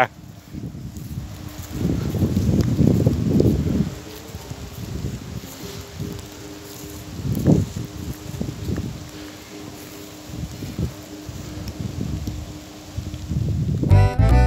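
Wind buffeting the microphone in uneven low rumbles, strongest about two to four seconds in, over a faint steady low hum.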